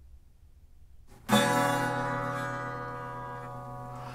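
Acoustic guitar: a single chord strummed about a second in, left to ring and slowly fade.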